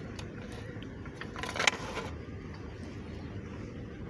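Steady low rumble of wind on the microphone, with a brief rustle and a sharp knock about one and a half seconds in as the handheld sonar display and phone are moved.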